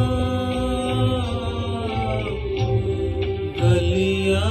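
A man singing a slow, sad Hindi film song in a long held line with gliding ornaments, over an instrumental backing with a soft steady beat.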